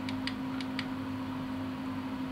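Four light clicks in quick succession within the first second: the button of a small handheld flashlight pressed repeatedly to change its brightness.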